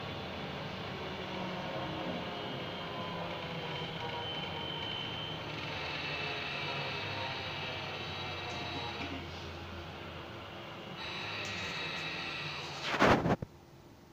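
Cabin noise of a city public-transport vehicle on the move: a steady running rumble with a high whine that comes and goes, twice. About thirteen seconds in, a short loud knock or rattle, after which it is much quieter.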